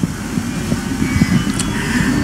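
Low, irregular rumbling and rustling from a handheld microphone and its cables being handled.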